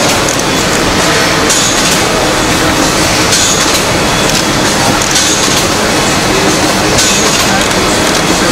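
Tea-packaging machinery running steadily on a factory floor: a dense mechanical clatter, with a sharper hiss coming back about every two seconds as the machines cycle. Voices murmur underneath.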